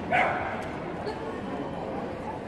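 A dog barks once, sharply, just after the start, over a steady hum of hall background noise.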